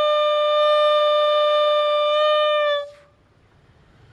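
Homemade balloon bugle, a balloon membrane stretched over a cut plastic bottle with a card-reel mouthpiece, blown hard: one loud, steady trumpet-like note held at a single pitch for nearly three seconds, then stopping abruptly.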